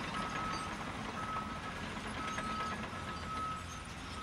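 A truck's reversing alarm beeping about once a second, each beep about half a second long, over a faint steady rumble.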